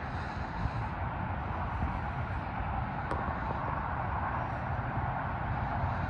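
Steady low outdoor rumble with no distinct source, with one faint click about three seconds in.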